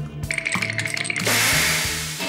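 Cartoon sound effect of wind-up chattering teeth clattering rapidly over background music. A little over a second in, a loud hissing whoosh follows as the teeth blow out their bad breath.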